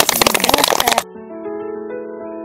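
A small group clapping in rapid, uneven claps, cut off abruptly about a second in, followed by instrumental music holding steady notes.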